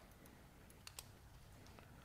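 Near silence: room tone, with two faint clicks close together about a second in.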